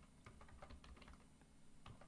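Faint typing on a computer keyboard: a scattering of light keystrokes.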